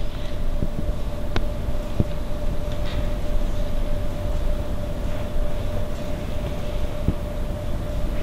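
Steady room hum and low rumble with one constant mid-pitched tone running through it, and a few faint clicks.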